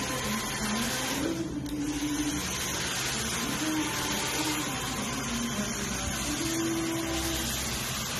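Steady whir of a small electric appliance motor with rushing air, holding an even level throughout, with faint wavering tones underneath.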